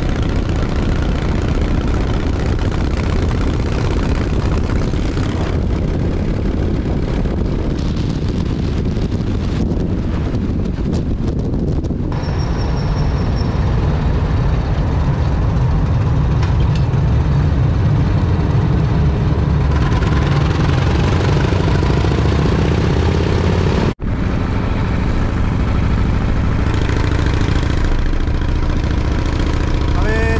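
V-twin cruiser motorcycle running at road speed, its engine mixed with steady wind and road noise on a bike-mounted camera. The sound changes character partway through, with a very brief dropout about two-thirds of the way in.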